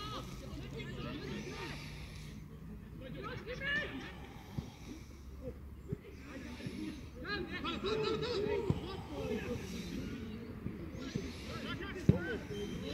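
Distant shouts and calls from players and spectators at an outdoor football match, coming in short bursts over a steady open-air background, with a few sharp knocks in between.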